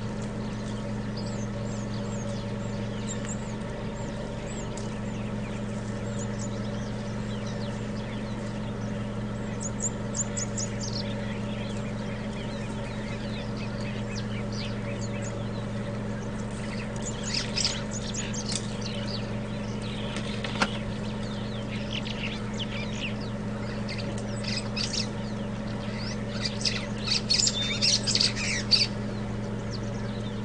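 Wild birds chirping and calling in short bursts, busiest in the second half, over a steady low hum.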